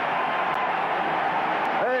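Stadium crowd cheering just after a goal, a steady din of many voices on an old television broadcast, with a brief 'øh' from the commentator at the very end.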